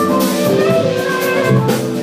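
Jazz-fusion band playing live: drum kit, electric guitar and keyboards holding sustained melodic notes over a steady beat, loud throughout.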